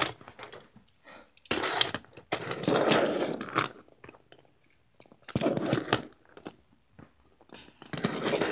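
Die-cast toy cars being set down and slid along a hard surface: clicks and rolling scrapes in three short bursts, the longest about two and a half seconds in.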